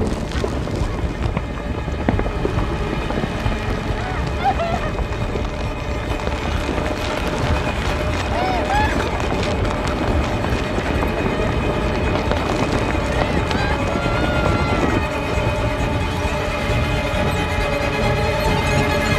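Horror-film soundtrack: a woman's panicked gasps and whimpers over rushing movement and a dark, low rumbling score. Sustained musical tones come in over the last few seconds.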